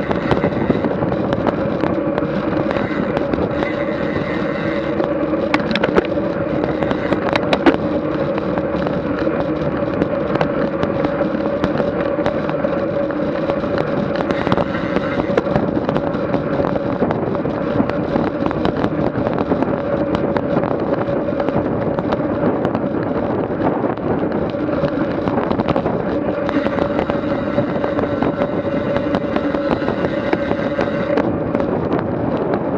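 Wind buffeting the microphone of a bike-mounted action camera, with road tyre noise from a road bicycle riding at about 24 mph. A steady hum runs under the crackle, with a couple of sharper clicks in the first third.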